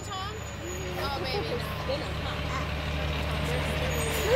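Fire department ladder truck's diesel engine running as it drives slowly closer, a steady low hum that grows gradually louder. Faint voices over it.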